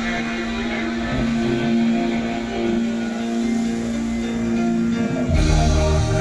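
Guitar-led music accompanying a fountain show, with a held note running through and a heavy bass line coming in near the end.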